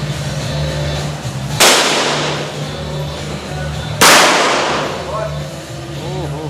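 Two pistol shots about two and a half seconds apart, each a sharp crack followed by ringing that dies away over about a second; the second shot is the louder.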